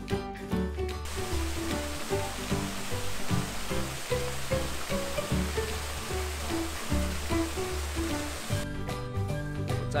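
A small garden waterfall splashing over rocks, a steady rush of water that starts abruptly about a second in and cuts off shortly before the end. It plays under background music.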